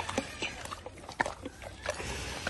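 Pigs eating soft porridge: irregular wet smacking and chewing clicks of their mouths, a dozen or so short smacks scattered over the two seconds.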